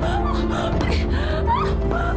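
A woman wailing and gasping in anguished crying, over steady dramatic background music.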